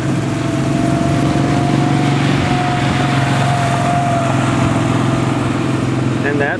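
Vehicle engine running steadily, with a thin whine that rises a little and fades out about four seconds in.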